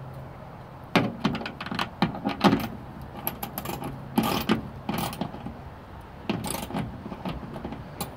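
Socket wrench ratcheting in short bursts of clicks and metal rattles as a wing-mirror mounting nut is tightened up. There are a few separate clusters, with pauses between strokes.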